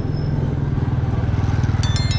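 Motorcycle engine running close by with a steady, evenly pulsing low note, getting slightly louder as it comes alongside. A short cluster of sharp metallic clinks near the end.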